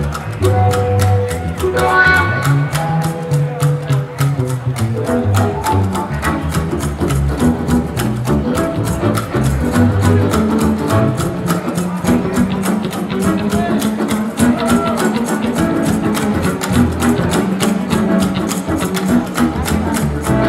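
Live funk instrumental: a homemade cigar-box upright bass plays a moving low bass line over a steady drum beat.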